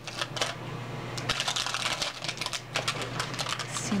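Plastic wrapping crinkling and crackling as it is peeled off an L.O.L. Surprise ball: a quick run of small clicks and rustles, busiest in the middle.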